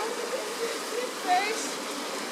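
Steady rushing of a small creek's flowing water, with faint distant voices over it.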